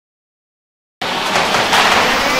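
Silence, then about a second in the rushing water of a large waterfall cuts in suddenly, as a steady, dense noise.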